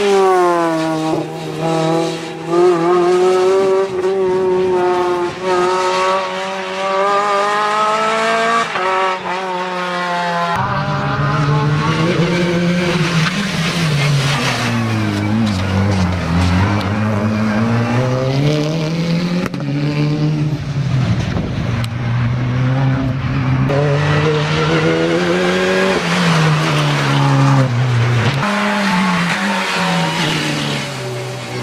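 Renault Clio race cars' four-cylinder engines revving hard and dropping repeatedly as they are driven through a slalom, the pitch rising and falling with each gear and turn. About ten seconds in, the sound cuts to a second car with a lower engine note, which keeps climbing and falling in the same way.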